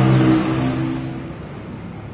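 A motor vehicle engine running with a steady low hum that fades away over about a second and a half.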